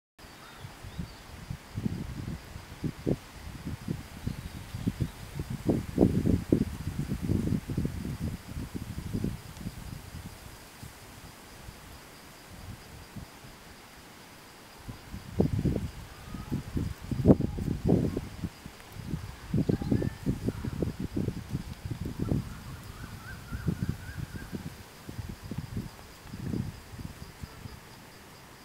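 Wind buffeting the microphone in irregular low rumbling gusts, in two long spells, with a steady high-pitched insect call running underneath throughout.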